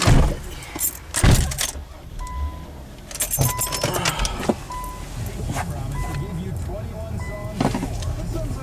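2003 Infiniti Q35's 3.5-litre V6 cranked and started about three seconds in, then idling steadily, under a dashboard warning chime beeping about once every 1.2 seconds. Two loud knocks come near the start.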